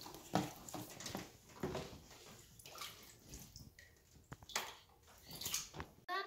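Water sloshing and splashing in a plastic storage tub as hands stir it and push floating toys and a plastic container about. The splashes come irregularly, a few louder ones spread through the sloshing.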